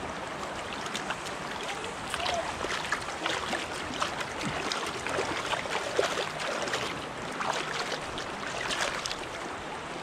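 Shallow stream water running steadily, with repeated small splashes and sloshing as hands work a stringer of trout in the water.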